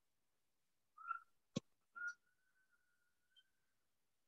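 Faint high whistle-like tones: a short one about a second in, a sharp click, then a single steady whistle held for nearly two seconds.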